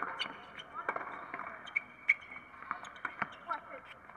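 Tennis rally on a hard court: a string of sharp hits from rackets striking the ball and the ball bouncing, the loudest about two seconds in.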